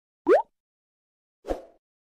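Cartoon sound effects from an animated logo intro: a quick rising pop about a third of a second in, then a softer thud with a short fading tail at about a second and a half.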